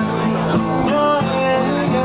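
A live band's amplified music with guitar and a moving bass line, playing steadily.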